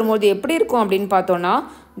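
Only speech: a woman's voice talking, which trails off about one and a half seconds in.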